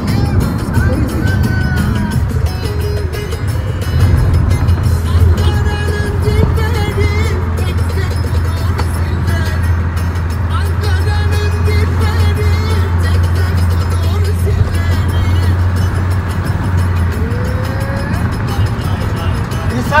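Moving car heard from inside the cabin: a steady low engine and road rumble that is heaviest through the middle stretch, with music playing over it.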